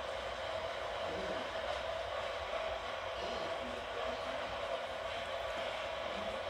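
Steady whirring background noise with a constant hum in the low-middle range, from a fan-like appliance running, with faint low voice-like sounds underneath.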